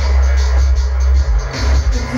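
Electronic hip-hop backing track played live from a laptop and DJ controller: a heavy, sustained bass line under a steady beat.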